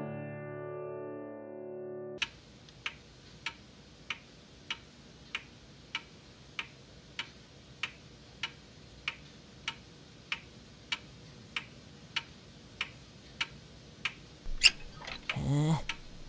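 Background music dies away in the first two seconds. Then a clock ticks steadily, about three ticks every two seconds. Near the end come a couple of louder sounds, one of them rising in pitch.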